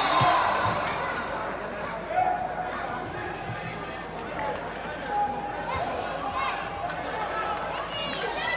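Distant shouts and calls from players and spectators during a youth football match, with a few dull thuds of the ball being kicked.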